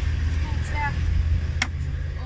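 A single sharp click about one and a half seconds in, from the sun visor's vanity mirror cover being worked, over a steady low rumble.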